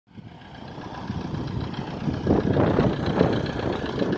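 A motor vehicle's engine rumbling, growing louder over the first two seconds and then holding steady.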